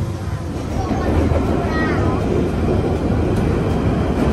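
London Underground train moving along the platform, a steady low rumble that gets a little louder about a second in.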